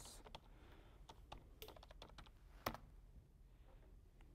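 Faint keystrokes on a computer keyboard as a password is typed in: a few scattered clicks, one a little louder about two-thirds of the way through.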